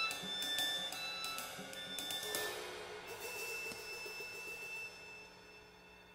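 Violin and drum kit duet: quick hi-hat and cymbal strokes under short high violin notes, then a cymbal crash about two seconds in that rings out and slowly fades.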